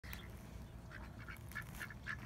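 Duck quacking, a quick run of short, faint quacks starting about a second in.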